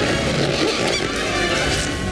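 Animated film trailer soundtrack: music with short cartoon sound effects, including a few quick rising squeaks about a second in.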